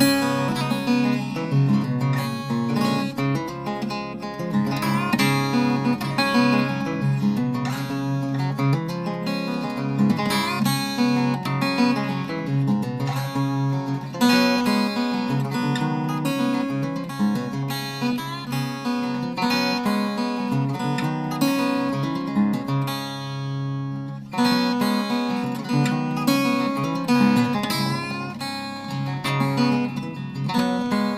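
A 1952 Gretsch 6185 Electromatic archtop guitar played unplugged: chords strummed and picked continuously, heard only through the hollow body's own acoustic sound, on strings the owner thinks are flatwounds. The playing lets up briefly about three-quarters of the way through, then goes on.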